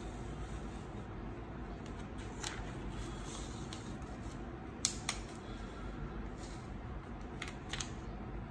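Clear plastic carrier film being slowly peeled off flocked heat transfer vinyl on a T-shirt: faint crinkling with a few short crackles, two close together about five seconds in, over a steady low hum.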